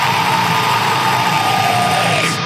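Heavy metal music: dense distorted guitars and drums, with one high note held over them that slides slightly down near the end.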